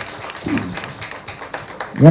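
Audience clapping, a loose patter of claps, with a short bit of voice about half a second in.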